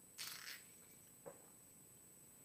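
Near silence with a faint steady hiss, broken by a brief soft rustling noise about a quarter second in and a tiny click just past a second in.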